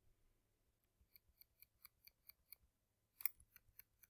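Faint, evenly spaced clicks of a computer mouse scroll wheel, about four to five ticks a second for a second and a half, then a louder click a little after three seconds in followed by a few more ticks.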